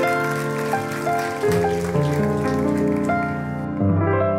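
Ritmüller piano playing slow, sustained chords and a melody, a new note or chord about every half second. A crackling hiss sits over it and cuts off shortly before the end.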